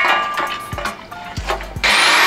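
Steel scaffolding pipes knocking and clanking as the frames are pulled apart by hand, with a short metallic ring at the start. Near the end a handheld electric drill starts up loudly.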